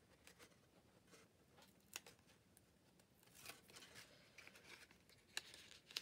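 Near silence with faint rustles and a few light clicks of paper card being handled, as a curved page is eased into place and pressed down onto double-sided tape.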